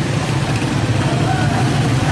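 Vehicle engine running steadily, with voices of a walking crowd faint beneath it.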